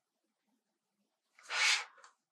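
A spiral-bound sketchbook slid and turned on a wooden tabletop: one short swish of paper and card on wood, about half a second long, starting about a second and a half in.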